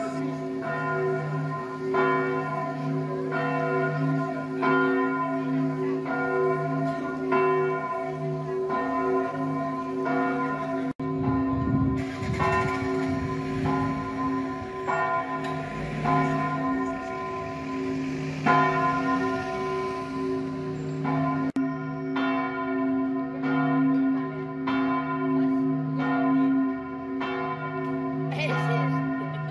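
Church bells of the San Giorgio cathedral ringing, struck about once a second, their tones overlapping into a steady hum. Midway there are a few seconds of wind rumble on the microphone.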